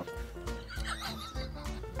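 Background music with a steady bed of held notes, and a brief wavering higher sound over it about a second in.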